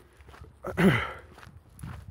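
A man's footsteps walking on a road, with one short, breathy vocal sound falling in pitch about a second in, like a sigh.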